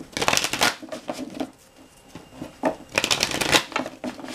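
Tarot cards being shuffled by hand: a dense flurry of rapid card flicks and slaps just after the start and a second flurry about three seconds in, with a few lighter card sounds between.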